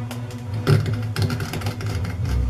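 Short scraping cuts of a half-round gouge hollowing out a violin pegbox, the sharpest about two-thirds of a second in and several more in quick succession after, over background music with held low notes.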